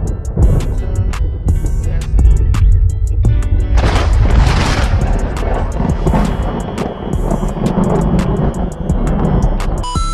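Hip-hop track with a deep bass line and a steady run of quick hi-hat ticks. A rushing noise swells up and fades away about four to five seconds in.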